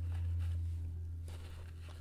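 Vacuum cleaner running in the background, heard as a steady low hum that eases off slightly toward the end.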